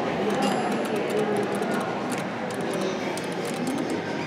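Dover oildraulic elevator in operation, heard from inside the car: a steady hum and rumble with a few faint clicks.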